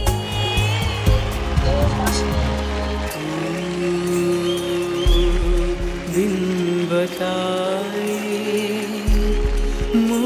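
Background music: sustained notes over a deep bass that drops out and comes back a few times, with a gliding melodic line.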